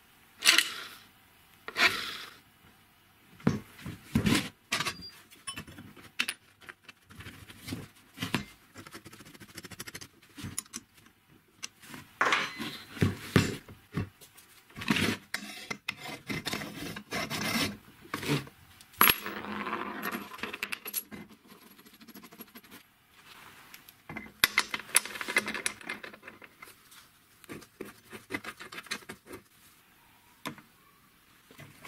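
Irregular metallic clinks, scrapes and rubs of hand assembly work: a nut and a toothed pulley are fitted onto an angle grinder's spindle, and the grinder is set into a welded steel sander frame.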